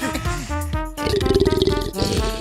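Children's cartoon background music with a snoring sound effect from a sleeping cartoon baby dinosaur: a buzzy, rattling snore in the second half.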